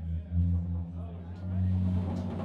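Live band playing low, throbbing bass notes on electric bass and trombone run through effects pedals, with no drums.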